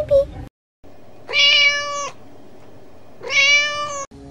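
Domestic cat meowing twice: two loud, long, level-pitched meows about two seconds apart.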